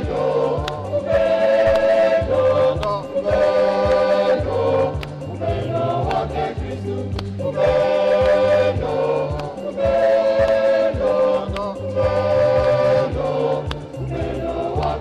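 Choir and congregation singing a hymn in phrases of a second or two, over an instrumental accompaniment with a stepping bass line and a steady beat.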